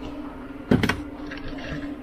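A couple of sharp knocks on the thin backer-board panel of an RV bathroom vanity cabinet, a little under a second in, over a steady low hum.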